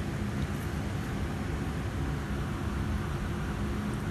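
Steady background machine hum with a few low droning tones over a constant hiss.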